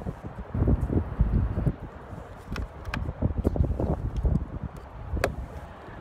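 Hard plastic mirror-mount trim cover being handled and pressed onto a car door, with light plastic clicks and taps and one sharp click about five seconds in as it snaps into place. Wind rumbles on the microphone throughout.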